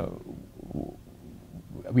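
A man's hesitation pause in speech: a drawn-out 'uh' trails off at the start, a faint low vocal sound follows, and he starts speaking again at the very end.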